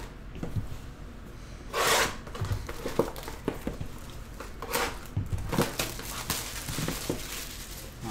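Plastic shrink wrap being torn and crinkled off a sealed cardboard trading-card box, with light knocks as the box is handled on the table. There is a loud rip about two seconds in and a shorter one near five seconds.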